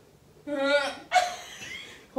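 A person's voice: a short held cry about half a second in, then a louder, sharper yelp just after a second.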